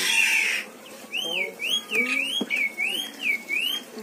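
A high, clear whistle that swoops smoothly up and down about twice a second, repeating five times from about a second in to near the end. It opens with a brief rush of noise.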